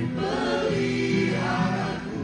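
A mixed group of men and women singing an Indonesian worship song together into microphones, holding long notes.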